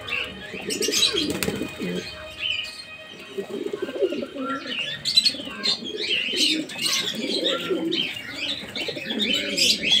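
A flock of domestic pigeons cooing, many low, wavering coos overlapping without a break, with higher chirping calls mixed in.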